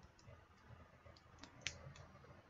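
A few faint, sharp clicks over near-silent room tone. They come from small objects being handled at a desk, and the loudest falls near the end.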